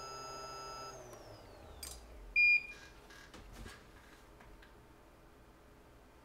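Bench electronics being switched on to power up a phone: a steady high whine falls in pitch and fades about a second in, then a few small clicks and one short electronic beep, the loudest sound, about two and a half seconds in.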